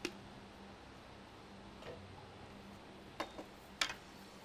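Sharp, hard clicks of a snooker cue and rest knocking together as the player sets up a shot with the rest, over a faint steady hum. One click comes right at the start, a softer one about two seconds in, then a quick pair, and the loudest click near the end.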